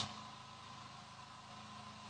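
A pause between spoken phrases: only faint steady background hiss with a low hum from the recording.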